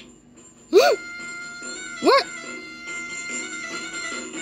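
Cartoon goose honking twice, each honk a short call that rises and falls in pitch, about a second in and again a little after two seconds, over background music.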